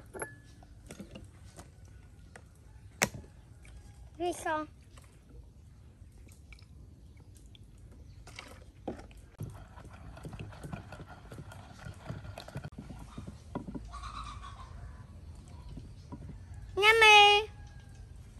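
Wooden pestle working a wet chili sauce in a mortar: a couple of sharp knocks, then soft, wet pounding and stirring. A short, high voiced call comes twice, about four seconds in and near the end; the second call is the loudest sound.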